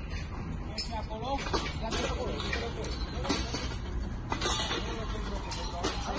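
Scattered sharp metal clanks of steel scaffolding tubes being handled and fitted together, over a steady low rumble, with workers' voices in the background.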